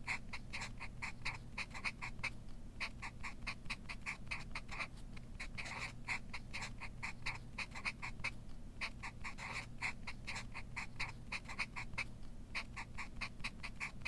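Marker pens writing on paper: a run of short scratchy squeaks, several a second with brief pauses between words, over a low steady room hum.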